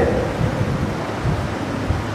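Steady background hiss with a low rumble underneath, with no voice.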